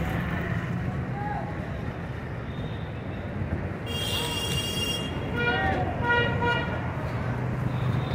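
Busy street traffic with a steady low rumble of passing vehicles, and a vehicle horn sounding about halfway through.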